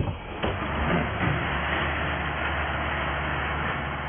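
Heavy construction machinery running: a wheel loader's diesel engine with a steady low drone under a loud, clattering din, after a brief thump at the very start.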